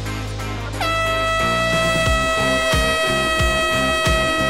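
Air horn sounding one long, steady blast that begins about a second in, the start signal for the runners, over background music with a beat.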